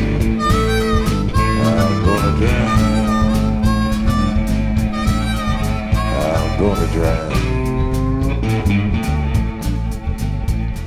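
Blues instrumental break: a harmonica playing held and bent notes over electric and acoustic guitars keeping a steady rhythm.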